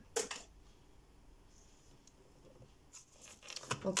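A deck of tarot cards being handled: a few short card clicks at the start, a stretch of quiet room, then soft shuffling clicks again shortly before a woman says "ok".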